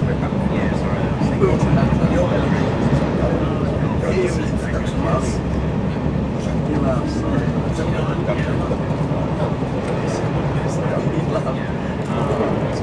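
Passenger train running at speed, heard from inside the carriage: a steady low rumble of wheels on track with scattered light clicks, under indistinct voices.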